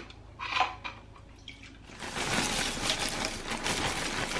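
Frosted corn flakes poured from a plastic bag into a plastic bowl of milk: a dense, steady rustle of dry flakes that starts about halfway in, after a few brief handling sounds.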